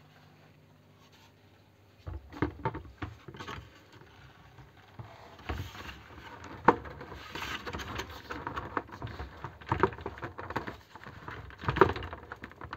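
Hard plastic clicks, knocks and rubbing as the grey plastic top collar of a BiOrb Air 60 is handled and worked down onto its acrylic sphere. The sounds start about two seconds in, come irregularly, and end with a sharp click.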